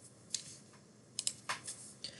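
A few faint computer keyboard key taps, irregularly spaced, with two close together just after a second in.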